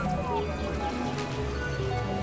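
Experimental electronic synthesizer music from a Novation Supernova II and Korg microKORG XL: low sustained drones under scattered short held tones, with a falling pitch glide in the first half second.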